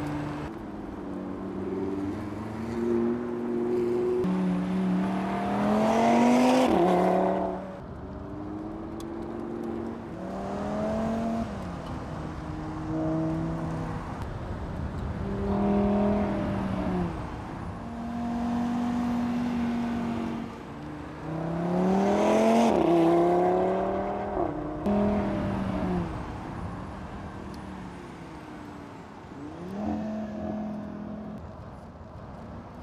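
Audi TT RS's turbocharged five-cylinder engine under hard acceleration, its pitch climbing steeply and then dropping sharply twice, with steadier running at lower revs in between.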